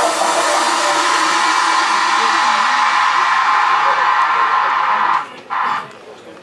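Audience applauding, with a few whoops. It cuts off about five seconds in, then comes back in one short burst.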